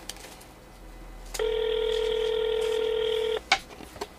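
Telephone ringback tone: one steady two-second ring starting about a second and a half in, the call ringing out without being answered. A sharp click follows shortly after the ring.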